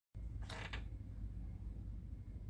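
A brief creak about half a second in, over a low, steady rumble; no piano is played yet.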